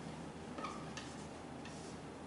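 Faint taps and short squeaks of a marker writing on a whiteboard, a few light ticks over a low steady room hum.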